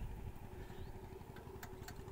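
Swaraj 744 FE tractor's three-cylinder diesel engine idling, a faint steady low rumble, with a couple of faint clicks near the end.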